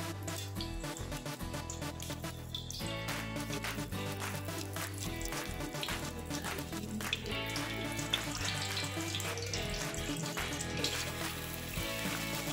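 Background music over a gentle sizzle of hot oil as whole spices (cloves, cinnamon stick, bay leaves) fry in a non-stick kadai.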